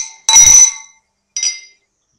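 Drinking glass clinking: a loud ringing clink about a third of a second in and a fainter one about a second and a half in, each fading quickly.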